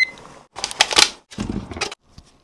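Bundle of dry spaghetti being snapped, crackling and splintering in two bursts of brittle snaps after a sharp click at the start.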